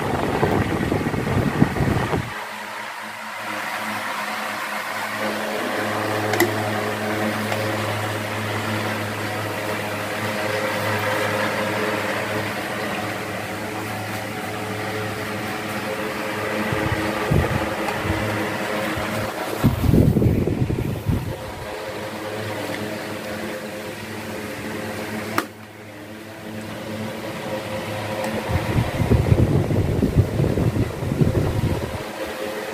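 Electric desk fans running: a steady low motor hum under the rush of the spinning blades. Their air stream buffets the microphone with low rumbles in the first two seconds, briefly about two-thirds of the way through, and again near the end.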